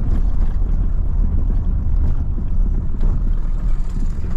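Steady low rumble of a Mercedes-Benz Sprinter van's diesel engine and tyre noise, heard from inside the cab while driving at a steady speed.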